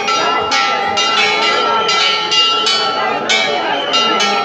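Hindu temple bells rung over and over, about two strikes a second, each one ringing on into the next.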